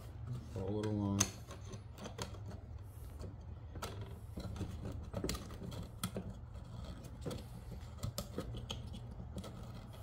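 Steel band saw blade clicking and rattling against the guides and plastic wheel housing of a cordless portable band saw as a replacement blade is fitted by hand, in a string of irregular light taps. A short voice sound comes about a second in.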